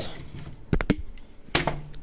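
One-handed bar clamps being released from a wooden board: a quick cluster of sharp clicks about three quarters of a second in, then another short knock about a second and a half in.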